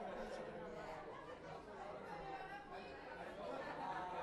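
Indistinct chatter of many people talking at once, overlapping voices with no single clear talker.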